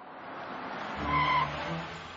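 Cartoon car sound effect: a cab rushes in and its tyres squeal briefly about a second in.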